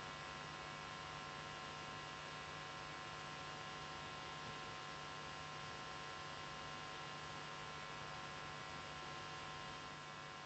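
Steady electrical hum with hiss and several constant high tones, unchanging throughout, with no other sound.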